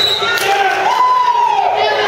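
Spectators in a gym shouting, one voice holding a long drawn-out yell about a second in. A single sharp slap on the wrestling mat comes about half a second in, the referee's hand calling the pin.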